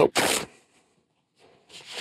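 A brief rub of a blue paper shop towel being smoothed by hand against wet oil paint on a canvas, blotting the excess oil from the paint so it won't turn to mud, followed by about a second of quiet.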